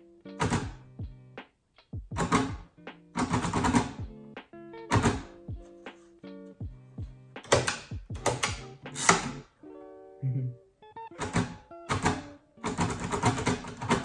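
Mechanical braille writer being typed on in quick bursts of clattering keystrokes, with pauses between bursts, over background music.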